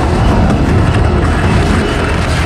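Electronic music in a psytrance and drum 'n bass style, in a dense, steady rumbling passage with heavy low bass and no clear drum hits.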